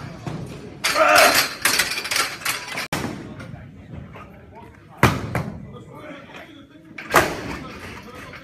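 Voices in a weightlifting training hall, then two heavy thuds about two seconds apart: loaded barbells dropped onto the floor.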